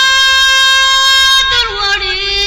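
Somali song: a high voice holds one long steady note for about a second and a half, then slides down to a lower note near the end.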